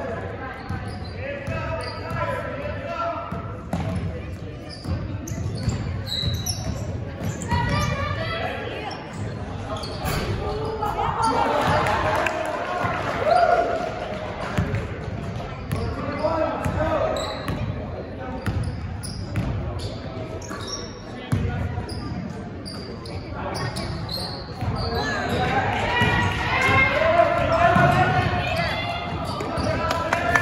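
A basketball dribbling on a hardwood gym floor, with shouting voices through the echoing gym.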